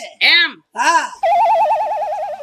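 A phone ringing: an electronic ring tone with a fast warbling trill, starting a little past halfway in and continuing.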